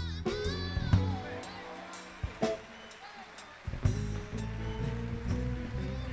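Male soul singer performing live with a band, singing held, sliding notes over sharp drum hits. The band thins out briefly around the middle, then comes back in fuller.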